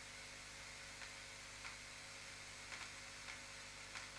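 Near silence: faint steady hum and hiss of room tone, with a few faint small clicks.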